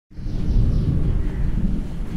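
A steady low rumbling noise, with no clear strokes or pitch.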